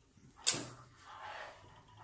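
Caulking gun pressing sealant into the gaps between metal flashing and corrugated roof sheet: a sharp click about half a second in, then a faint hiss.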